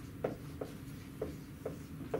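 Marker pen writing on a whiteboard: about four short, unevenly spaced strokes.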